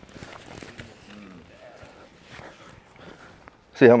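Faint scuffing and shuffling of bare feet and bodies on grappling mats, with distant voices of other people in the background. A man starts speaking close by near the end.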